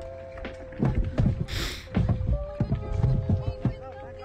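Heavy steel balls clunking irregularly against a car's tyres and underside as it drives over them, heard from inside the cabin. A steady held note of background music runs underneath, and there is a brief hiss about one and a half seconds in.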